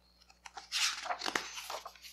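Thick picture-book page being turned by hand: a rustle of stiff paper with a sharp snap about midway.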